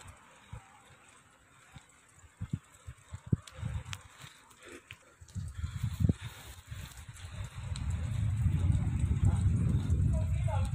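Wind buffeting a handheld phone microphone during a bicycle ride, with a few scattered knocks from handling the phone; the low rumble grows loud over the second half.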